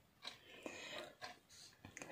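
Near silence: quiet room tone with faint, soft rustling in the first second or so.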